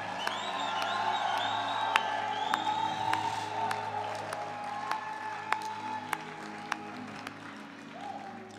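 Congregation applauding and cheering in praise, with a few high whoops in the first few seconds, over sustained keyboard music. The applause tapers off toward the end.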